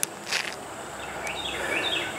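Outdoor yard ambience: a bird gives a quick run of short high chirps from about a second in, over a steady high insect drone. A brief scuff sounds just after the start.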